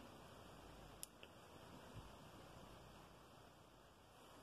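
Near silence: room tone, with a faint click about a second in and a soft low thump about two seconds in.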